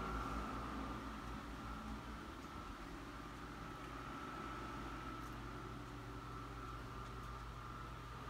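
Quiet, steady room tone inside a shop: a constant hum and hiss with a faint steady whine and no distinct events.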